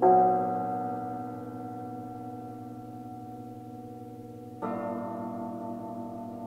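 Cimbalom strings struck with hammers: a chord rings out and slowly dies away, and a second, quieter chord is struck about four and a half seconds in and left ringing.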